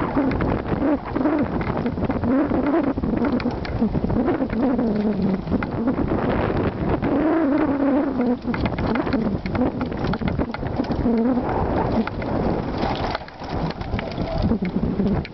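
Mountain bike riding over a rough dirt and rock trail: a steady rattle and clatter of many small knocks, with a low wavering hum underneath.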